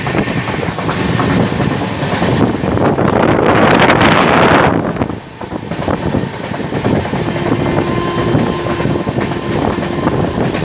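Express train running at high speed, heard from an open coach doorway: wheels clattering over the rails under a rush of wind on the microphone. The rush swells for about two seconds a few seconds in and drops off suddenly.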